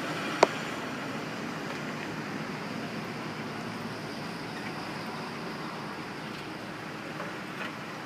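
2005 Chevrolet Impala running and rolling slowly forward, a steady quiet hum of engine and tyres, with a single sharp click about half a second in.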